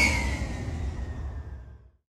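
The tail of an intro logo sting, an electronic sound effect with a falling tone, dying away and fading out shortly before the end.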